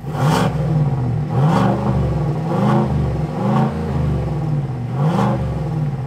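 2024 GMC Sierra's 6.2-litre naturally aspirated V8 revved at standstill through its active exhaust with the flaps open: about five quick throttle blips, each rising and falling in pitch.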